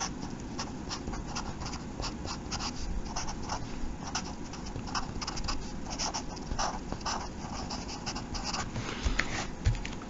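Felt-tip marker writing on paper: a quick run of many short strokes as a few words are written out.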